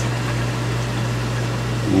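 Steady mains hum of a reef aquarium's sump pump, with the even rush of water moving through the sump plumbing.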